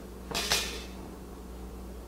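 Brief handling noise of a loosened sliding bevel gauge being adjusted, its steel blade shifting against the work: two quick scraping clicks about half a second in, then only a low steady room hum.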